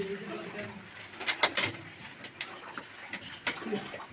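A few sharp knocks and clicks, a cluster about a second and a half in and another near the end, from PVC drain pipe and broken brick being handled on a rubble floor.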